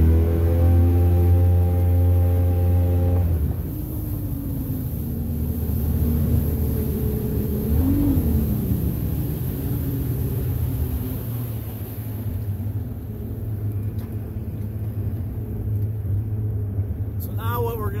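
Jet boat's engine opened up hard for a full-throttle launch: a loud, steady engine note for about three seconds that then eases back to a lower, steady running note, with a brief rise and fall in pitch about eight seconds in. Wind hiss on the microphone fades out partway through.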